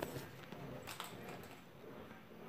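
Faint handling noise: two light clicks, one at the start and one about a second in, as craft materials and a nearly empty glue bottle are handled.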